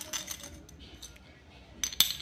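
Small white magnet clicking and clinking against a large copper coin as it is worked on and off by hand: a few light clicks early on, then a sharp snap near the end followed by a quick run of clicks.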